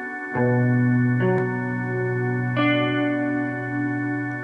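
Instrumental backing music of sustained chords over a steady held bass note. The chord changes about a third of a second in and again about two and a half seconds in.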